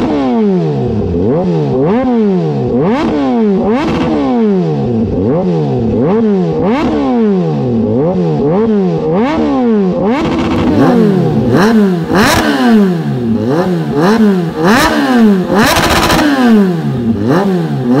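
Kawasaki Z H2's supercharged inline-four revved through an aftermarket slip-on exhaust: repeated throttle blips, about one a second, the pitch climbing and falling each time. From about ten seconds in the blips are louder and harsher, with sharp cracks among them.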